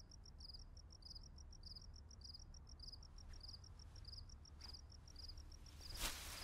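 Crickets chirping faintly in a steady, even rhythm of short pulses, over a low steady hum. A brief swell of noise comes at the very end.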